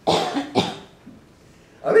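A man coughing twice, two short coughs about half a second apart, followed by a brief lull before his speech starts again near the end.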